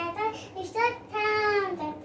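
A young girl singing, holding one long note about a second in.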